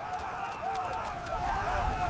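Faint, distant shouting voices over a low rumble that builds toward the end.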